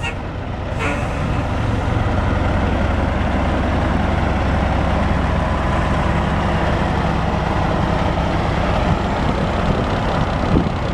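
Caterpillar 3406 14.6 L inline-six diesel of a 1990 Peterbilt 378 semi truck running steadily, growing louder over the first second or two and then holding an even level.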